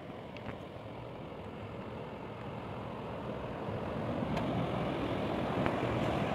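Water rushing out through a dam's outlet, a steady churning rush that grows louder, with a few faint taps.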